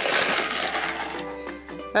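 Music with held notes, over the running of a battery-powered TrackMaster toy engine on plastic track.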